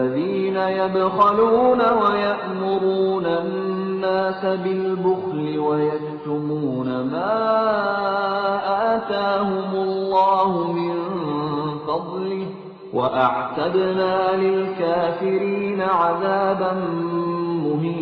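Solo male voice chanting the Quran in Arabic in melodic tajwid style, with long held notes that slide and ornament in pitch. It comes in two phrases with a short breath between them, about two-thirds of the way through.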